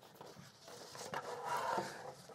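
Faint room sounds in a small room: light rubbing and scraping noises with a few small clicks. About halfway through a faint, distant voice rises.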